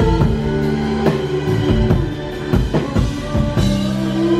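A live band plays an instrumental passage: drum kit hits over a bass guitar line and held keyboard chords, with no singing.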